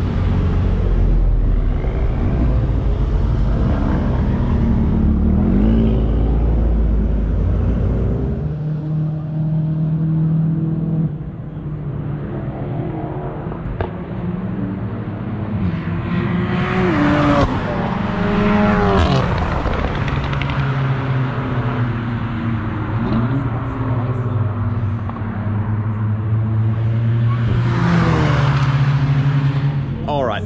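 Track cars' engines: cars pull out of the pit lane with a low rumble, then cars accelerate and pass along the straight, their engine notes rising and falling with each pass, clearest a little past halfway and again near the end.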